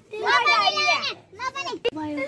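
Several children's high voices talking and calling out, with a sharp click just before the end.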